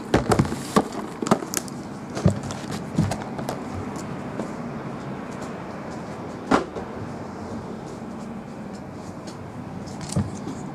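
Cardboard trading-card hobby boxes being picked up and set down on a table: a run of light knocks and clicks in the first few seconds, then one sharper knock a little past halfway, over a steady low room hum.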